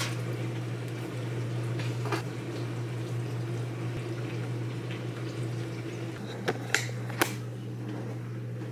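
A steady low hum runs throughout, with a few light, sharp clicks from handling things at the counter about six and a half to seven seconds in.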